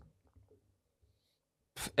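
Near silence: room tone with a faint low hum, and a man's voice starting again near the end.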